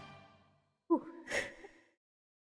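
The song's backing music tails off, then the singer's voice gives a short sound falling in pitch about a second in, followed by a breathy sigh.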